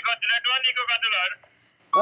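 A high, thin voice calling out for about a second and a half, with a tinny, telephone-like quality, then it stops.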